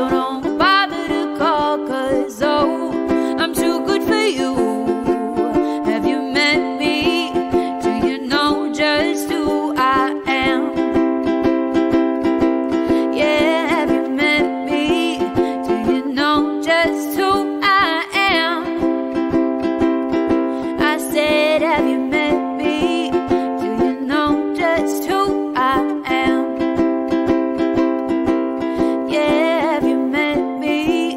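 Ukulele strummed steadily in a live song, with a woman singing over it.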